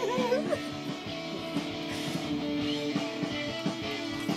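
Guitar music with strummed, ringing chords held at a steady level.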